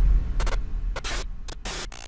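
Logo sting sound effect: a deep boom fading away under a string of short, crackling static-like noise bursts, about five of them.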